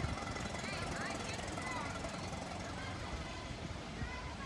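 Small birds chirping over a low, uneven rumble from the four-cylinder engine of a 1926 Ford Model T running some way off as it pulls away.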